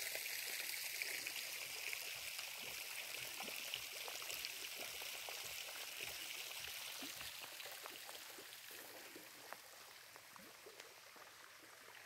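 Steady splash and trickle of water running in a tiered stone fountain, growing fainter toward the end.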